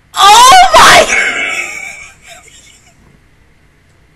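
A woman's loud, excited scream into a close microphone, wavering in pitch for about a second, then trailing off over the next second or so.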